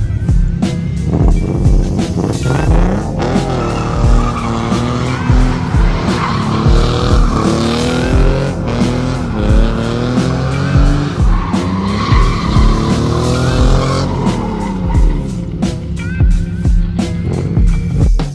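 Nissan 300ZX doing donuts: the engine revs up and down over and over with tires squealing on the pavement. A music track with a steady beat plays over it.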